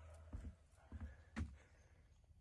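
Three faint, soft thumps about half a second apart.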